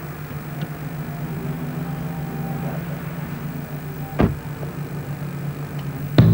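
Car engine running steadily at low revs, with a single sharp thump of a car door shutting about four seconds in.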